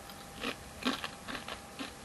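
Someone chewing crunchy corn chip sticks (seaweed-flavoured Doritos sticks): a few faint, irregular crunches.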